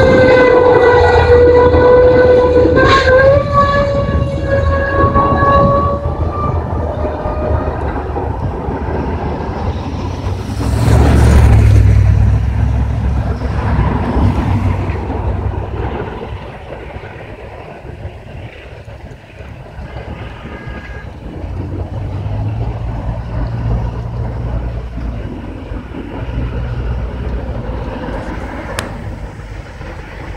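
A single-pitched horn sounds steadily for about eight seconds over a low rumble, with a slight step in pitch about three seconds in. About eleven seconds in, a loud rushing burst swells and then fades away, with the low rumble continuing.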